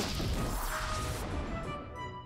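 Added magic-spell sound effect: a noisy shimmering rush that fades away over about a second, over light background music.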